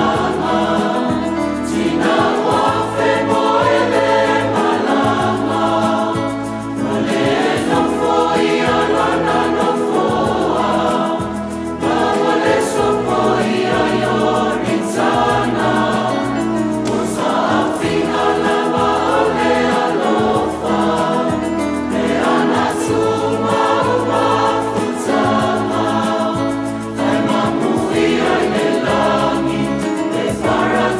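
A mixed choir of young men and women singing a Samoan hymn together, over a low bass line, with short breaks between phrases.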